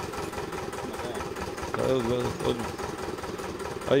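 Well-drilling rig's engine idling steadily with a fast, even firing beat, with a man's voice briefly over it about two seconds in.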